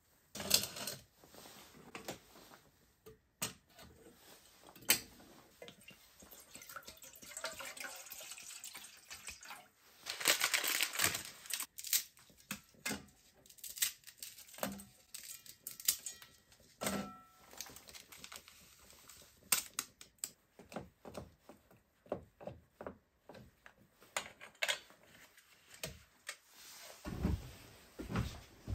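Clinks and knocks of an aluminium cooking pot and spirit-stove parts being handled and set down, with a longer stretch of pouring and rustling into the pot about a third of the way in.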